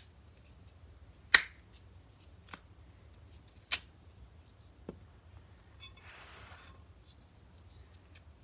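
Small plastic food packets pulled apart by hand: a few sharp snaps, the loudest about a second in and another near four seconds, then a short crinkly rustle of plastic.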